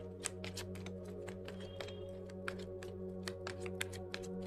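A deck of tarot cards shuffled by hand: a quick, irregular run of soft card clicks, several a second, over steady background music.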